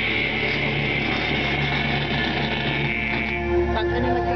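Metalcore band playing live in a small studio room: distorted electric guitars and drums in a dense, sustained wash. About three and a half seconds in it breaks with a sudden hit, and held notes ring on.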